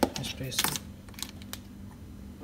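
Aluminium espresso capsules clicking and tapping against a plastic holder tray as they are picked out by hand: a handful of light, sharp clicks spread across a couple of seconds.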